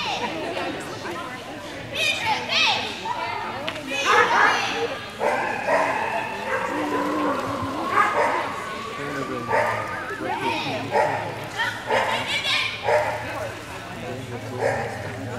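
A dog barking repeatedly in short bursts, over people talking in the background.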